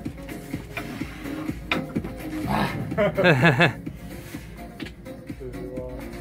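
A man's loud, strained groan of effort lasting about a second, its pitch wavering, from straining against his opponent in an arm-wrestling pull. Music plays throughout.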